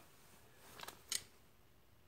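A few faint, short clicks about a second in, from a cordless drill and a small gear motor being handled, over quiet room tone.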